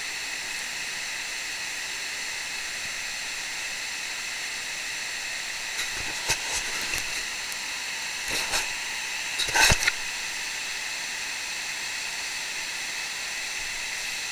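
Steady underwater hiss picked up by a camera under the water, with faint high steady tones in it. Several short bursts of noise break in near the middle, the loudest just under ten seconds in.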